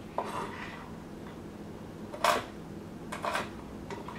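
Chef's knife slicing almonds on a wooden cutting board: a faint tick, then two sharp knocks of the blade on the board about a second apart.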